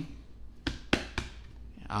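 Three short, light taps as fingers grip and handle a cardboard watch-box sleeve, about a quarter second apart. A man says 'uh' at the very end.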